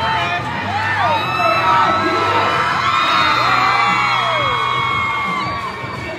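Rodeo crowd cheering and whooping, with many overlapping rising and falling yells and a few long held whistles, over background arena music.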